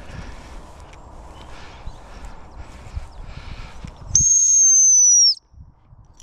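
A single long blast on a gundog whistle: the sit (stop) whistle for a spaniel. It is one steady, shrill high note, just over a second long, that begins about four seconds in and sags slightly in pitch as it ends. Before it there is only faint outdoor noise.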